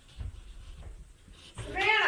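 Faint scratching of a felt-tip marker drawing stars on a painted surface, then near the end a loud, high, drawn-out cry that bends in pitch.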